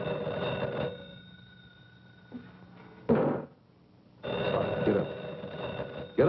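Telephone bell ringing twice, each ring about a second long with a pause of about three seconds between them. A short, loud sound comes about three seconds in, between the rings.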